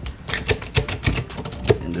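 Irregular sharp metallic clicks and rattles from a door latch mechanism being worked by hand with a small tool where the handle is missing, the door still locked. The loudest click comes near the end.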